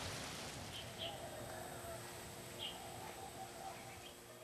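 Faint bird chirps, a few short calls in all, over quiet outdoor ambience.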